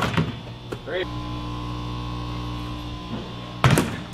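A steady hum, then a quick cluster of loud knocks from a basketball near the end.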